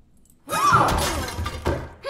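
Glass shattering sound effect: a sudden crash about half a second in, followed by a second or so of ringing, tinkling pieces that fades out.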